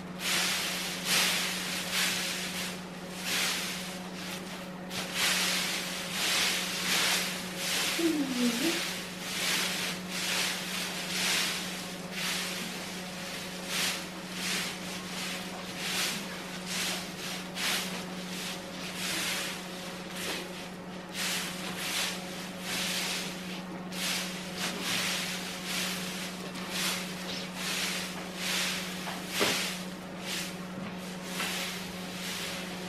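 Pitchfork working straw bedding in a horse stall: a run of irregular rustling swishes as straw is scooped and tossed, about one or two a second, over a steady low hum.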